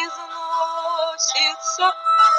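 A solo voice singing a Russian romance over an instrumental backing track, holding and sliding between sustained notes.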